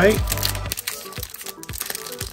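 Foil wrapper of a Pokémon booster pack crinkling in a string of small crackles as it is torn open by hand. Background music stops a little under a second in.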